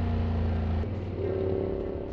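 Motorcycle engine running on the road, with wind noise. Its steady note drops in level a little under a second in and changes pitch as the bike slows toward a junction.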